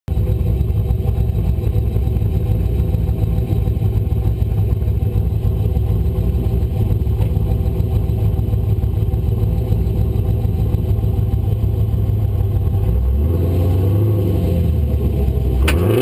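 1998 Camaro LS1 5.7-litre V8 with SLP long-tube headers, heard from under the car, idling steadily with a low exhaust note. About 13 seconds in the engine note rises and falls gently, and just before the end a sharp click comes as the revs start to climb steeply.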